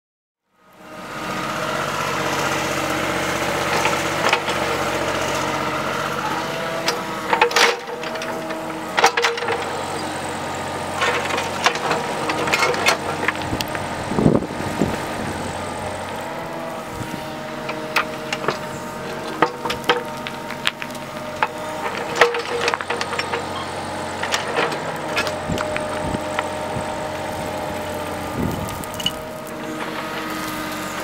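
Kubota KX91-3 mini excavator's diesel engine running steadily under load, starting about a second in, with frequent clanks and scrapes as the steel bucket digs into rocky soil.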